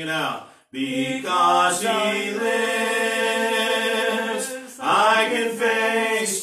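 Slow hymn singing in long held notes. There is a brief gap for breath about half a second in and another dip near the end.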